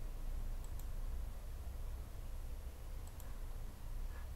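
Two faint computer mouse clicks, one under a second in and one just after three seconds, over a steady low background hum.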